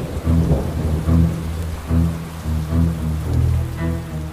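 Rain and thunderstorm sound effect under a dark music bed, with a low bass pulsing about every two-thirds of a second.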